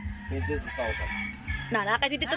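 A rooster crowing once, a drawn-out call lasting about a second, over brief snatches of voices.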